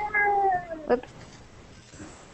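A domestic cat meowing: one long, drawn-out meow that falls in pitch as it ends, about a second in.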